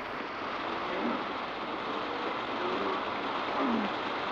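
A steady, even hiss of background noise with a few faint voice-like glides in it. It starts and stops abruptly.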